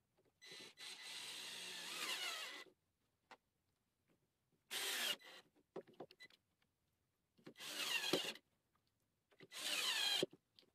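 Cordless drill-driver driving wood screws through a small metal faceplate into an olivewood bowl blank, in four separate runs: a long one of about two seconds starting half a second in, then three shorter ones about five seconds in, eight seconds in and at the very end.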